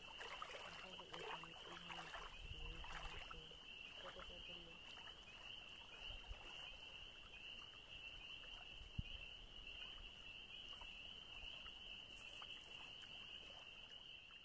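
Faint, steady, high-pitched trilling of insects, running without a break. During the first few seconds there is also a faint voice and some soft splashing or rustling.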